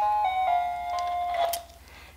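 Light-up ceramic Christmas village music box playing a simple tune in steady, held notes that change every quarter to half second; the melody stops about one and a half seconds in.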